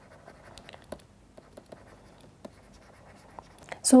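Faint scratching and light ticks of a stylus writing on a pen tablet.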